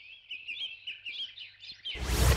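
Small birds chirping: a quick, busy run of short high chirps, several a second.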